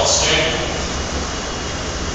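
Whiteboard duster wiping across the board, a steady scrubbing noise with a low hum beneath it.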